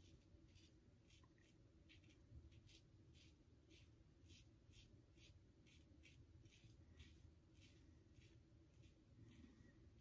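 Very faint scratching of a Gillette Tech safety razor's blade cutting stubble through lather, in short, even strokes about two to three a second.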